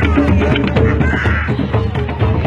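A drum circle of hand drums and percussion playing a steady, dense rhythm. A short high-pitched cry rises over the drumming about a second in.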